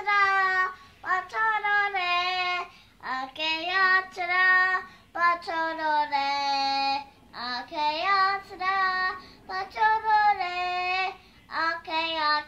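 A young boy singing a song unaccompanied: phrase after phrase of held, slightly wavering notes with short breaks between them.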